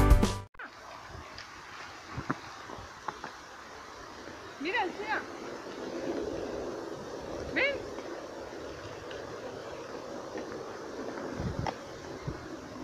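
Background music cuts off about half a second in, leaving quiet outdoor sound from dogs playing in snow, with a few short rising calls around five and seven seconds in and a few light knocks.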